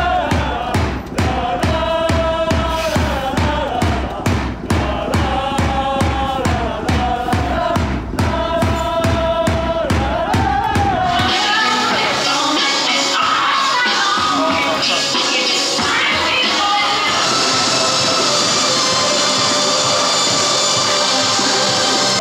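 Football supporters singing a chant together over a steady, even drumbeat. About eleven seconds in the drum and chant stop and a steady hiss with held tones takes over.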